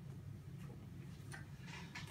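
Quiet room tone: a steady low hum, with a few faint ticks and rustles in the second half.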